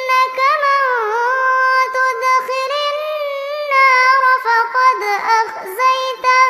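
A girl reciting the Quran in Arabic in a melodic, sung style (tilawat), holding long notes and adding ornamented turns and dips in pitch, with short breaths between phrases.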